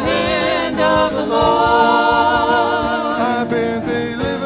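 Live gospel worship music: lead and backing singers with electric guitars, keyboard and drums, the voices holding one long note through the middle.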